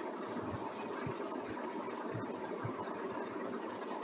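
Whiteboard being wiped clean with an eraser: quick back-and-forth rubbing strokes, about four a second, over a steady background hum.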